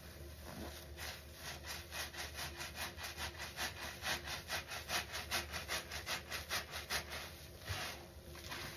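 A large sponge soaked in water and fabric softener being squeezed hard and fast, over and over, with a wet squelch of suds on each squeeze. The squeezes come about four a second, from about a second in until near the end.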